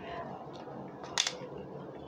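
A single sharp click about a second in from the ring light's plastic phone holder being handled and adjusted on its gooseneck arm, over faint handling noise.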